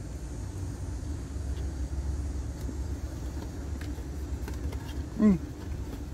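Steady low hum of a parked car running, heard inside the cabin, with a short 'mm' from the eater about five seconds in.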